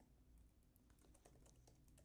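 Faint typing on a computer keyboard: a string of light key clicks.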